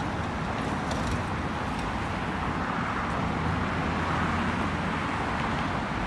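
City street traffic: cars driving past on the road, a steady rumble that swells a little about halfway through.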